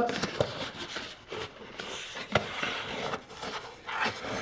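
A cardboard box being opened by hand: the flaps scraping and rustling, with a few light knocks.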